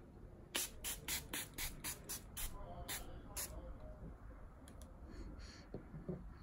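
Pump-spray bottle of OXX setting spray misting the face in quick spritzes: about a dozen short bursts in the first three and a half seconds, then a few fainter ones.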